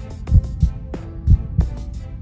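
Game-show suspense music under a thinking countdown: a low heartbeat-like double thump repeating about once a second over faint held notes.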